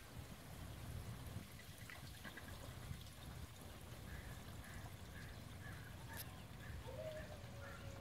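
Faint outdoor pond ambience: a soft trickle of water over a low rumble, with faint high chirps repeating from about halfway through.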